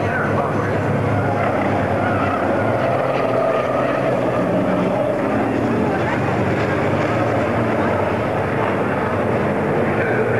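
Racing trucks' diesel engines running continuously as they lap the circuit, mixed with voices talking.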